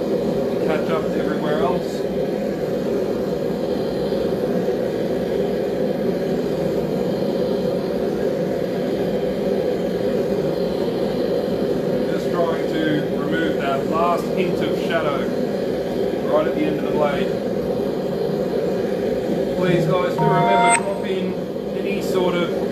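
A forge running with a constant, loud rushing noise while the blades are brought up to heat for hardening.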